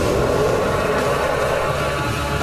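Loud, steady rushing noise with a low rumble beneath it, a sound effect from a sci-fi film's soundtrack.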